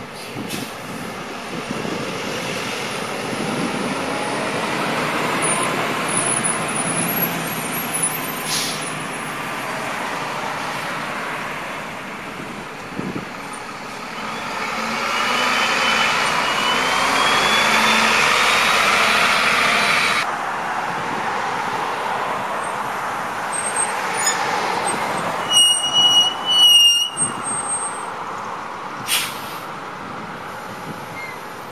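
City transit buses pulling out and driving past, engines running under acceleration; one bus passes close about halfway through, getting louder with a rising whine. Near the end a bus brake gives a short high-pitched squeal.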